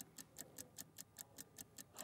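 Faint, even ticking at about five ticks a second: the tick sound effect that runs with the on-screen sales countdown timer.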